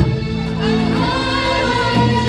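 A women's vocal ensemble singing an Arabic tarab song together, voices held and gliding on long notes.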